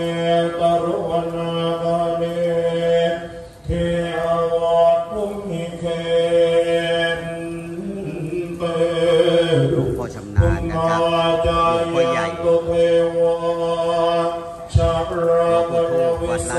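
A group of Thai Buddhist monks chanting Pali verses in unison on a steady, low recitation pitch, pausing briefly between phrases. A few dull thumps come through about four, ten and fifteen seconds in.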